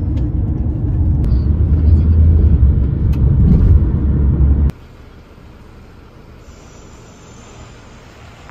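Car cabin road and engine rumble heard from a passenger seat, a loud steady low drone that cuts off abruptly a little past halfway, leaving faint outdoor background.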